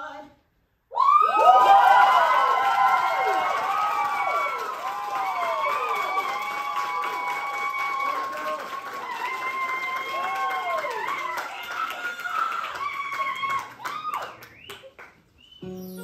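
Audience applause and cheering with whoops and shouts, starting suddenly about a second in and fading near the end. Just before the end, a guitar begins plucking the intro to the next song.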